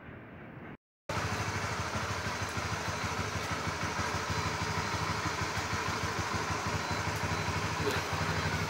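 Honda CB150R's single-cylinder engine idling steadily, coming in abruptly about a second in after a brief silence.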